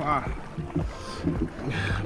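Water lapping and sloshing around a diver floating at the surface, close to the camera's microphone, between short bits of his speech.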